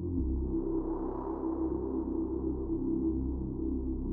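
Intro of an electronic psytrance track: a low, steady drone of sustained tones with a soft swell about a second in, no beat yet.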